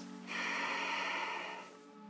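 A woman's slow, audible breath lasting about a second and a half, over soft background music with sustained tones.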